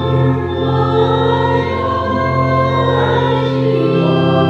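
A hymn sung by voices with an organ accompanying, its low notes held steady.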